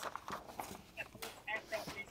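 Sheets of paper and card being handled and lifted off a table, with light rustling and a few soft taps and knocks.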